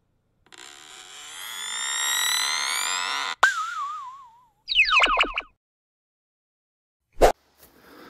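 Cartoon-style editing sound effects: a rising whoosh of about three seconds ends in a sharp hit and a wobbling, falling boing, then a short wobbly falling chirp, and a single click near the end.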